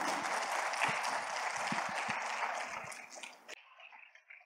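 Audience applause in a hall, fading steadily, then cut off abruptly about three and a half seconds in.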